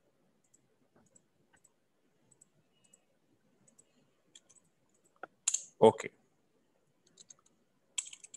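Faint, scattered clicks of a computer mouse, a few spread over each second, growing louder and closer together about five seconds in.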